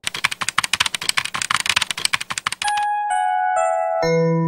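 Rapid computer-keyboard typing, a dense run of uneven clicks, for about two and a half seconds. Then a bell-like mallet-percussion melody of single ringing notes begins.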